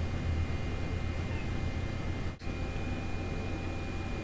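Steady room tone: a constant low hum with faint hiss. It drops out for an instant a little over two seconds in, where the recording is cut.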